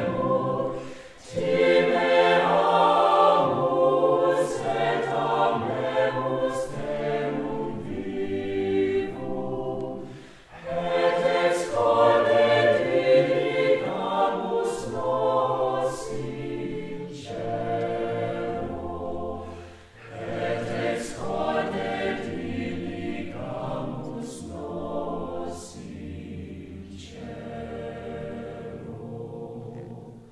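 Mixed-voice chamber choir singing in long phrases, with brief breaks about a second in, around ten seconds and around twenty seconds, and crisp 's' sounds in the words.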